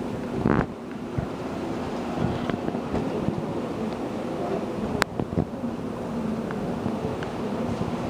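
Steady hum of barn ventilation fans with a faint murmur of voices, and a single sharp click about five seconds in.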